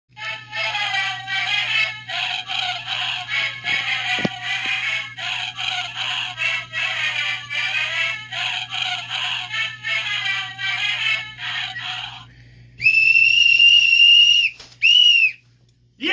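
Music for about twelve seconds, then a whistle blown: one long steady blast of about a second and a half, then a short blast.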